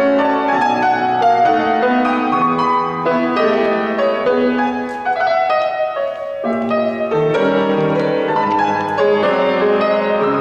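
Grand piano played solo: a continuous passage of melody and chords over a bass line, thinning briefly about five seconds in before the low notes come back in.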